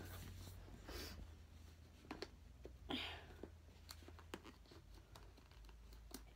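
Faint handling noise of a cardboard subscription box being turned over and opened: a few light clicks and taps with soft rustles, the fullest about three seconds in.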